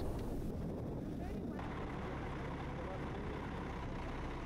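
Faint, steady low rumble of road traffic: vehicle engines running on a highway.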